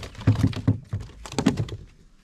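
A quick, irregular run of hollow thunks and knocks on a plastic fishing kayak's hull and fittings, about six or seven in two seconds, as the angler shifts and handles his rod.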